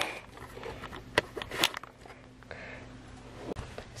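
A few faint, sharp clicks and taps of the plastic receipt-printer mechanism being handled, over a low steady background hum.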